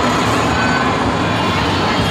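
Children's ride-on electric train running around its track, a steady mechanical rumble with a low hum, under the chatter of a crowd.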